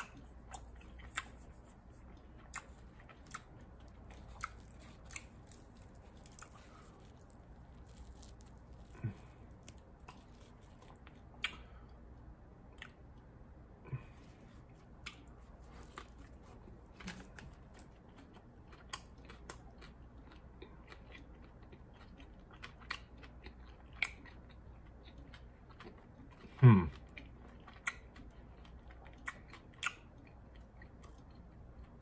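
A person chewing a soft bread sandwich with mouth closed, with faint wet mouth clicks scattered throughout. About 27 seconds in there is a short hum that falls in pitch.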